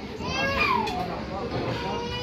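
Children's voices: high-pitched chatter and calls from children playing, with one call falling in pitch about half a second in.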